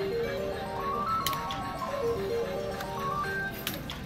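Video slot machine's big-win music: short runs of electronic notes, each climbing stepwise, repeating over and over while the credit meter counts up the win. Two sharp clicks sound about a second in and near the end.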